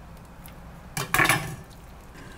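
A brief clatter of kitchenware on the counter about a second in: two quick knocks close together with a short ring.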